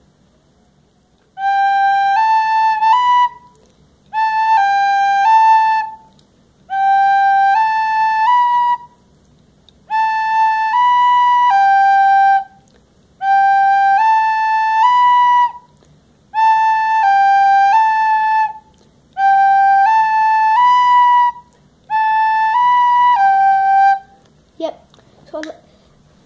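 Plastic soprano recorder playing a simple tune on three notes, in eight short phrases of about two seconds each with brief pauses between, the notes stepping up and down.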